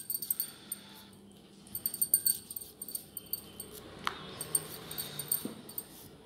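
Rolling pin working puri dough on a stone board, with bangles and rings clinking in short bursts of light taps, and a short rising squeak about four seconds in.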